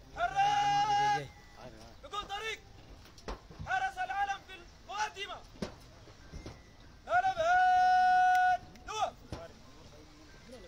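A man shouting drill commands across a parade ground: a loud call drawn out on one held pitch at the start, shorter shouted calls between, and a second, longer drawn-out call about seven seconds in.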